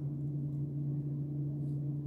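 A steady low hum of two even tones that does not change.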